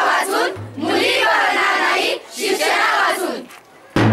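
A group of children shouting in unison, in chanted phrases of about a second each with short pauses between. A low steady hum runs beneath from about half a second in.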